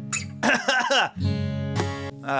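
Acoustic guitar chords ringing, with a fresh chord struck about a second in, and a man's voice heard briefly over it.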